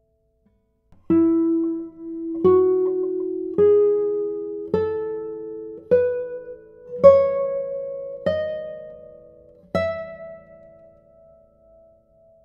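Kazuo Sato Prestige 2022 classical guitar, spruce top with Madagascar rosewood back and sides, playing a slow ascending one-octave scale of eight single plucked notes. The notes start about a second in and come roughly one every 1.2 seconds. The last note is left ringing.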